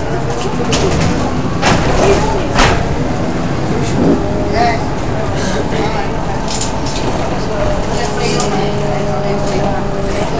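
Bus cabin noise while driving: a steady engine and road rumble with a humming drone. A few sharp knocks and rattles come in the first few seconds.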